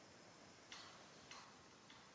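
Near silence: a faint steady hiss with three short, faint ticks about half a second apart.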